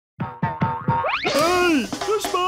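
Cartoon sound effects in a children's channel jingle: four quick bouncy boing notes, then a rising slide and a pitched tone that rises and falls near the end.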